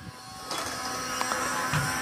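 Small electric motor inside a motorized golf swing-training club whirring, a steady whine with several pitches that grows louder about half a second in.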